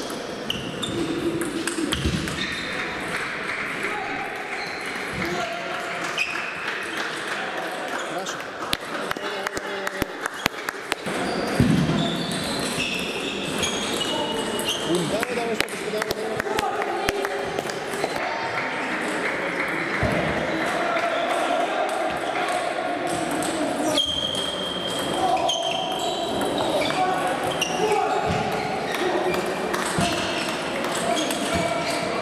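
Celluloid-type table tennis balls clicking off bats and tables, with hits from several games at once, over background chatter of voices in a large sports hall.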